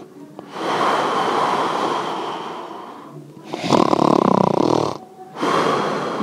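A person snoring in long, drawn-out snores, three in a row, the first and longest lasting about three seconds.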